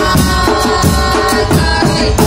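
Murga porteña percussion: bombos con platillo, bass drums with a cymbal mounted on top, beating a steady, driving rhythm with the cymbals crashing on the strokes. Held melodic tones run over the drumming.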